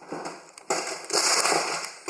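A deer sniffing and nosing right at the phone's microphone: irregular bursts of crackly, rustling noise, the longest and loudest lasting about a second in the second half.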